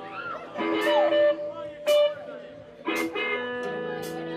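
Electric guitar strummed three times, each chord or note left to ring out between strokes, as the guitar is tried out before a song. Voices from the room are heard underneath.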